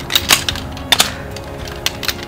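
Shock-corded metal poles of a folding camp chair frame clacking and snapping together as they are unfolded: a handful of sharp clicks, the loudest about a third of a second and one second in.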